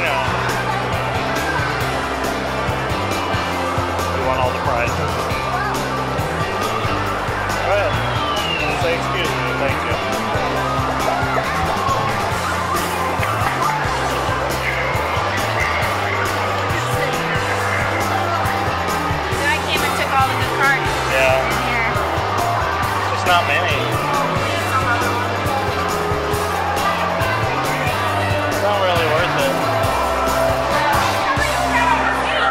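Busy arcade din: background music with a steady, repeating bass line, over people's voices and scattered electronic sound effects from the game machines.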